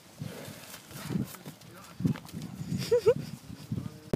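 Dairy cow grazing at close range, tearing and cropping grass in irregular low rips. A brief two-note squeaky call is heard about three seconds in.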